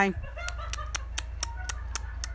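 A quick row of short, sharp clicks, about four a second, over a steady low hum.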